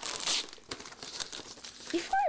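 Gift wrapping paper being torn and crumpled by hand as a present is unwrapped, in irregular rustling rips, the loudest a fraction of a second in.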